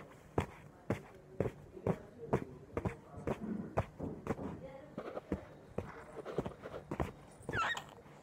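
A small child slapping her hands down on a hard surface in a steady beat, about two slaps a second, with bits of babble and a short rising squeal near the end.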